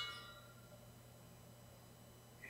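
Near silence: room tone with a faint steady low hum. A brief ringing tone at the very start dies away within a fraction of a second.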